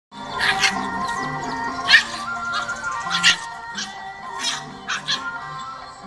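Dogs scuffling, with about seven short, sharp yelps and barks over steady background music.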